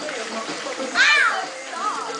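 A girl's high-pitched shriek about a second in, with a shorter cry near the end, over children's chatter and background music.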